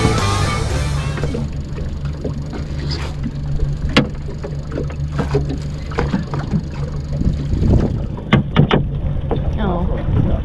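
A boat's motor idling steadily under scattered knocks and clatter as a wire crab pot is hauled up on its rope and lifted over the side of an aluminium boat, with a cluster of knocks about eight seconds in. Music fades out in the first second or so.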